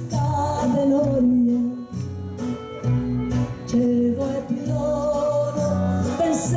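A woman singing into a microphone over a live band with plucked strings and bass, holding long notes.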